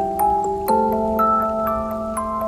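Music-box music: a slow melody of bright, ringing plucked notes over lower sustained tones, with a fuller chord struck near the start.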